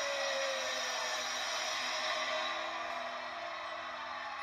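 Instrumental passage of a song with held, sustained notes and no singing; one high held note fades out about half a second in.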